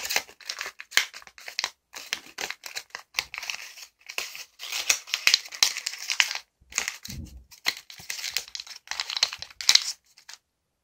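A sheet of green origami paper crinkling and rustling in quick irregular bursts as fingers fold and press its creases, shaping it into a box.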